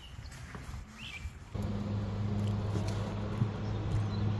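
Quiet open-air background, then from about a second and a half in a steady low hum of a fishing boat's electric trolling motor running.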